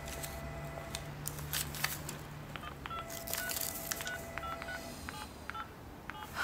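Mobile phone keypad beeping as a number is dialled: about ten short two-tone beeps in quick succession over the second half, after a few soft clicks and rustles.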